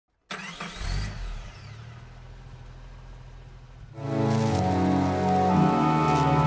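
Intro sound effect: a sudden start just after the beginning, with sweeping pitch glides over a low rumble that settles into a quieter hum. About four seconds in, loud music with long held chords comes in.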